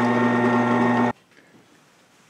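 Benchtop drill press running with its bit down in a steel tube held in the drill-press vise, a steady motor hum. It cuts off suddenly about a second in.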